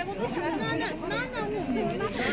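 Background chatter of several people talking at once, with a little street noise beneath it.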